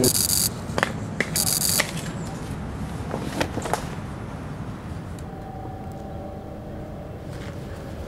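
Two short bursts of hiss, then scattered clicks and knocks of a burlap sack and a cable clamp being handled. A faint steady hum comes in about five seconds in.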